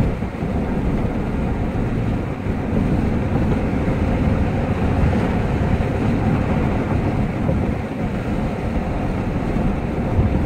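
Steady road noise inside a moving vehicle's cabin: a low, even rumble of tyres, engine and wind at freeway speed.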